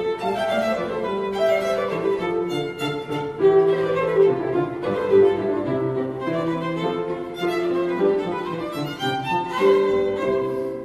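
A violin playing a melody of held notes, changing about once a second, over lower sustained accompaniment.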